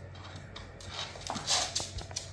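Shiba Inu dogs play-fighting over a toy, making a few short dog sounds, the loudest about one and a half seconds in.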